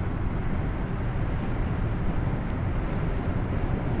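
Steady road and engine noise of a car moving along a highway, heard from inside the cabin.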